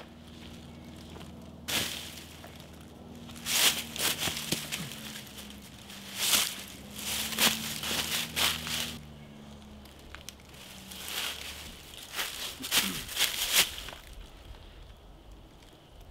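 A jacket's fabric rustling and crinkling in irregular bursts as it is pulled onto a rubber torso target, with dry leaf litter crunching underfoot.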